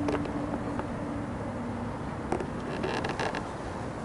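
Small sailboat under way: a steady low rumble with a faint hum that fades out after about a second. Light clicks and creaks come once near the start, again a little past two seconds, and in a short cluster around three seconds in.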